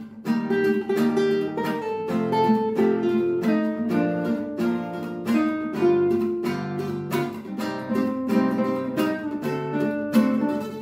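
Two nylon-string classical guitars playing together in G minor, one strumming chords while the other fingerpicks the melody in a steady stream of plucked notes.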